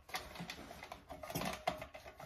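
Hershey's chocolate bars being snapped into pieces by hand and set into a pan: a quick, irregular run of small clicks and snaps.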